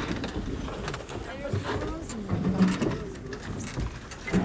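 Indistinct voices of people talking nearby, with a few scattered knocks and rustles.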